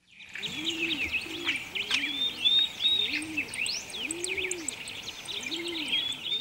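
Birdsong: small birds chirping and trilling quickly and continuously, with a dove cooing softer underneath, one rising-and-falling coo about every second. It starts suddenly out of silence.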